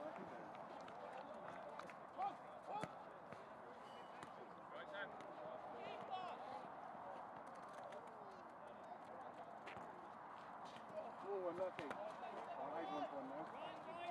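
Faint, distant shouts and calls of footballers across an open pitch, busier in the last few seconds, with two sharp knocks about two and three seconds in.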